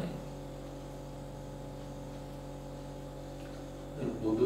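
Room tone: a steady low hum with faint hiss.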